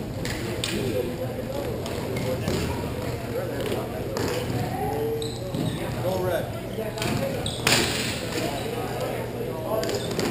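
Hockey game play heard from behind the net: scattered knocks and clacks of sticks and puck, with faint calls from players and a steady low hum underneath. About eight seconds in comes a louder, half-second rush of noise.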